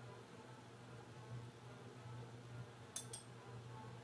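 Near silence: faint room tone with a low, steady hum and a faint click about three seconds in.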